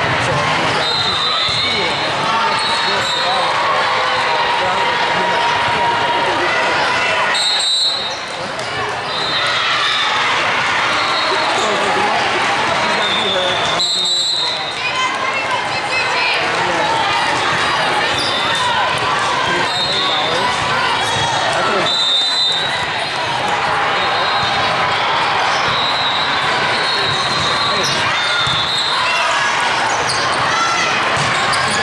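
Din of a crowded volleyball tournament hall: many voices mixed with volleyballs being hit and bouncing on the courts, echoing in the large room. Short high-pitched tones cut through it now and then.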